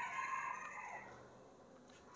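A faint, drawn-out call in the background, about a second long, that falls in pitch at its end.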